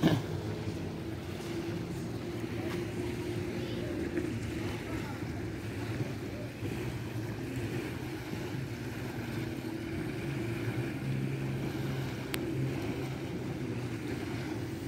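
A steady low motor hum over faint outdoor background noise, its pitch shifting a little partway through.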